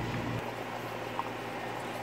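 A pot of pepper soup boiling on the stove: a steady bubbling hiss from the rolling boil.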